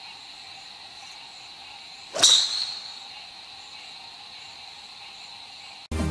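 A golf club swung through a light-up golf ball: a short swish ending in one sharp crack of impact about two seconds in, over steady crickets chirping.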